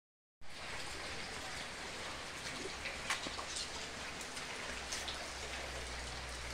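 Steady rain falling, an even hiss with a few faint scattered ticks.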